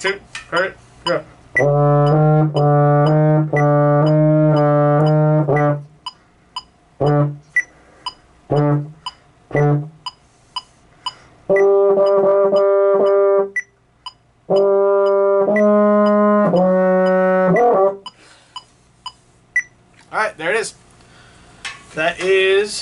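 Baritone horn playing an exercise from measure sixty-nine: a run of repeated low notes, a few short separate notes, then two higher phrases, stopping about four seconds before the end. A steady metronome tick sounds behind the playing.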